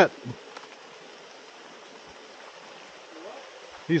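Faint, steady outdoor background noise: an even hiss with no distinct events. A faint, short sound comes about three seconds in.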